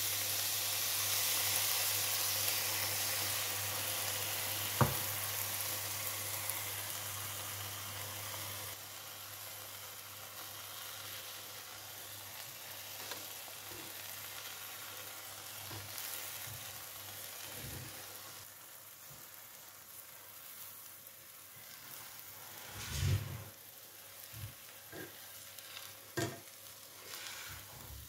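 Beaten eggs sizzling as they fry over cauliflower and tomato in a non-stick frying pan, loud at first and fading steadily as the egg sets. A few short knocks and scrapes of a spatula in the pan near the end.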